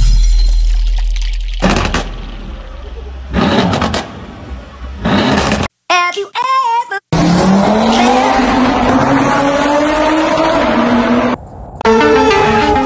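Edited intro sound: a deep bass boom and three sharp hits, a brief wavering pitched sound, then a car engine running hard for about four seconds, its pitch slowly rising as it accelerates.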